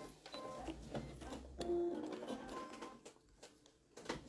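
Brother electric sewing machine running briefly with a low motor hum, then stopping, with light clicks and a few short tones as the machine and fabric are handled.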